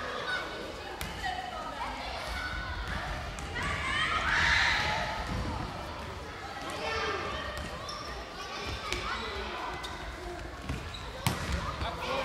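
Children's voices shouting and calling in an echoing sports hall during a dodgeball game, louder for a moment about four to five seconds in, with a handful of sharp thuds of the ball hitting the floor or a player, one of them loud near the end.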